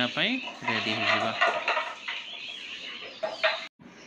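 Domestic chickens clucking, with a man's voice briefly in the first second. The sound cuts off suddenly just before the end.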